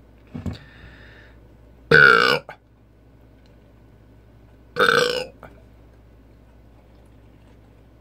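A man burping twice, about three seconds apart, each burp a short pitched belch; the first, about two seconds in, is the louder. A smaller, fainter burp comes just before them.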